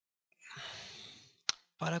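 A person breathing out audibly in a long sigh lasting about a second, followed by a short click, just before speech begins.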